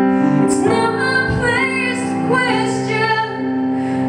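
A woman singing live over held chords on a Nord Electro 3 stage keyboard, her voice gliding between notes from about half a second in.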